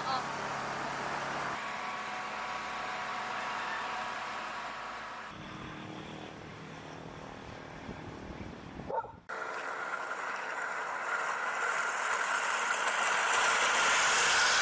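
Faint outdoor ambience with distant voices over several short shots. In the last few seconds, wooden rakes are pushed through a layer of drying corn kernels, making a steady scraping hiss of shifting kernels that grows louder.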